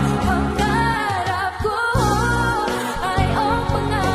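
Female vocalist singing a Tagalog song live into a handheld microphone over band accompaniment, holding and bending long melodic notes above a steady bass.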